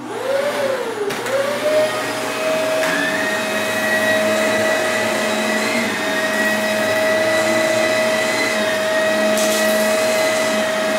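Shark Rotator Powered Lift-Away canister vacuum running, with its power head going over carpet strewn with oats and Cheerios on further passes. Its motor whine climbs and wavers in pitch for the first couple of seconds as it comes up to speed, then holds steady.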